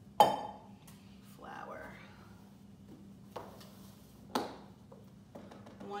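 Kitchen bowls and utensils knocking on the counter while baking ingredients are set out: one sharp, ringing clack near the start and a softer knock about four seconds in.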